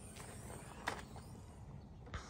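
A single short click about a second in, faint: the rear liftgate latch of a 1986 Ford Bronco II being released as the gate is opened.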